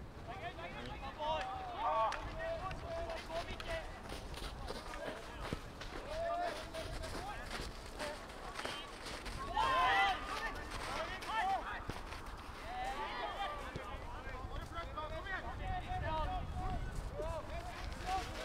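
Distant shouts and calls of footballers on the pitch during play, short scattered cries rather than continuous talk, with the loudest shout about ten seconds in.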